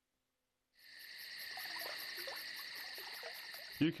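Silence, then a night-time ambience of crickets and frogs fades in about a second in: a steady high chirring of insects with faint low frog croaks beneath it.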